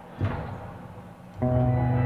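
Live indie rock band in a quiet instrumental passage: a single plucked note sounds, then about a second and a half in the band comes in with a loud sustained chord.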